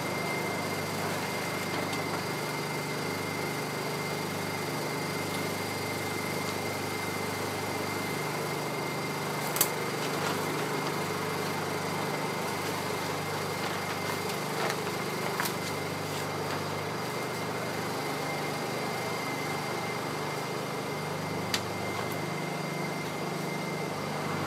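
Two paralleled Honda EU2000i inverter generators running steadily in eco mode with no load: a constant low hum with a thin steady high tone over it. A few sharp clicks come about ten, fifteen and twenty-two seconds in.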